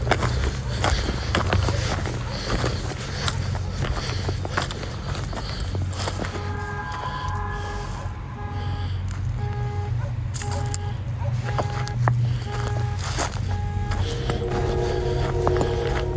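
A car alarm beeping repeatedly in the distance, a two-note tone pulsing about once every three-quarters of a second, starting about six seconds in. It sounds over a low steady drone.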